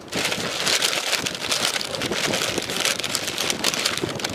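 Brown paper bag rustling and crinkling continuously as a pennant is pushed into it and the bag is handled.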